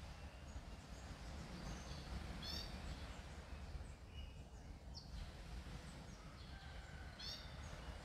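Faint bird chirps over a steady low background rumble: a short trilled call about two and a half seconds in and again near the end, with a few scattered single chirps between.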